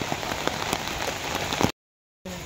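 Steady rain falling on an umbrella held overhead, a dense run of small drop ticks, which cuts off suddenly near the end.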